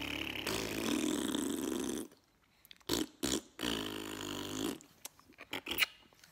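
Raspberries blown with the lips: two long, low, buzzing trills, the first over about the first two seconds and the second a little past halfway. A few short lip smacks fall between them.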